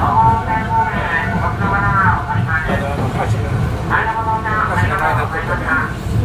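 A voice speaking throughout, over the steady low rumble of a commuter electric train running on the track.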